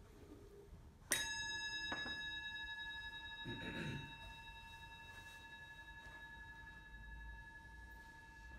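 A metal ritual bell or bowl struck once, ringing on in several steady clear tones that fade slowly, with a lighter second strike about a second later.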